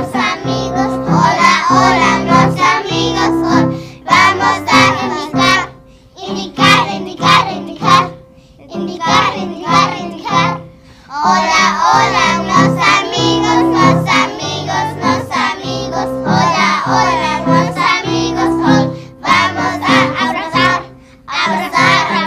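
A group of children singing a simple song in Spanish together over an instrumental backing, in short phrases with brief pauses between lines.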